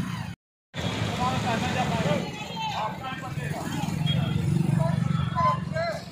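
People talking over the steady low hum of road vehicle engines, the engine hum louder in the second half. The sound drops out completely for a moment just after the start.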